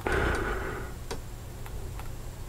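A few faint, unevenly spaced clicks over a low, steady hum.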